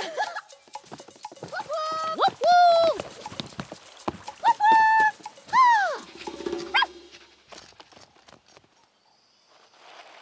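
High-pitched cartoon voices making short wordless calls, their pitch sliding up and down, several in a row; from about seven seconds in only faint rustles and clicks remain, close to silence.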